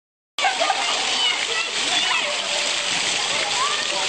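Water jets of a ground-level plaza fountain splashing onto wet paving in a steady rush, starting abruptly about a third of a second in, with voices of people chatting around it.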